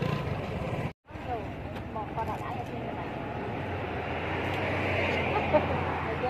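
Indistinct background voices over a steady low outdoor hum, broken by a brief dropout to silence about a second in.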